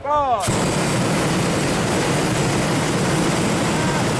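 Hot air balloon's propane burner firing in one long, steady, loud burn that starts abruptly about half a second in.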